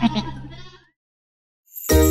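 A sheep's bleat, a cartoon sound effect, over the last notes of the song, fading out within the first second. After a moment of silence, new music starts near the end.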